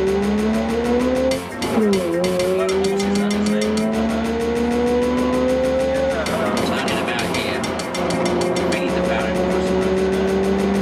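Mazda RX-8's twin-rotor rotary engine heard from inside the cabin under hard acceleration. The revs climb, drop sharply at an upshift about two seconds in, then climb slowly again. About six seconds in the engine note turns rougher and noisier for a couple of seconds before settling into a steady pull. A short laugh comes at the very start.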